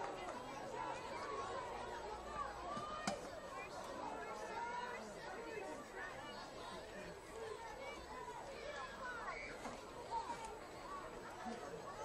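Crowd chatter at a high school football game: many voices talking at once with no clear words. A single sharp clap or knock about three seconds in.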